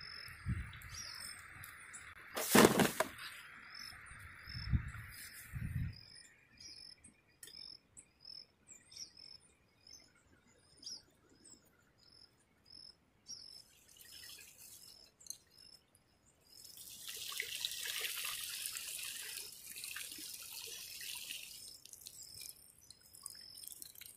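Water sloshing and pouring as a plastic-jug fish trap is lifted and handled in shallow river water, with a sharp knock a few seconds in and a longer stretch of pouring water in the second half. A short high chirp repeats evenly about once a second in the background.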